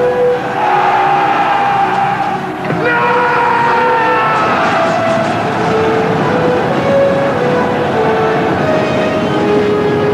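Epic film battle soundtrack: held musical notes that change pitch every second or two, over a dense, steady roar of a charging army.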